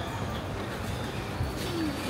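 A bird cooing over a steady background hubbub.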